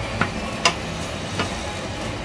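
Diced tomatoes frying in a pan, being cooked down until they break apart, with a steady sizzle. A wooden spatula stirs them and knocks against the pan three times.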